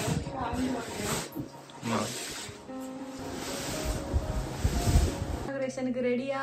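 Irregular scraping and rustling bursts with a few low thumps as a large side-by-side refrigerator is shifted into place. Background music comes in clearly near the end.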